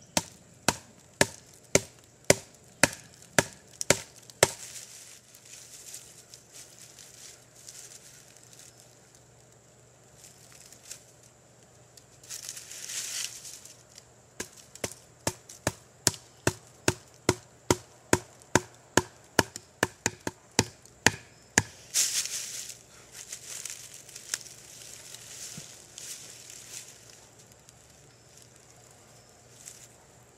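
Wooden baton striking the spine of a knife driven into a tough old pine root to split it: sharp knocks about two a second, in two runs, with rustling between and after the runs. The root is very tough and is barely giving way.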